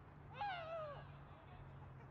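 A single short, high shout from a distant footballer, falling in pitch and lasting about half a second, over a steady low hum.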